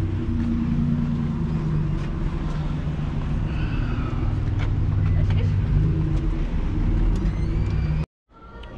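Steady low rumble of nearby car engines and street traffic, with faint voices over it.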